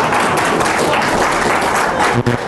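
Lecture audience applauding and laughing in response to a joke, a dense patter of many hands clapping.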